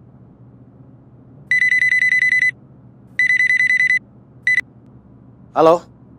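A phone's electronic ring, a high trilling tone sounding twice for about a second each. A third ring is cut off almost at once as the call is answered.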